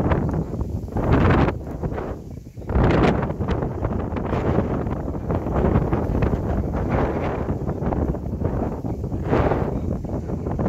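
Wind buffeting the microphone: a loud, low rushing noise that comes in gusts, swelling about a second in, again around three seconds, and near the end.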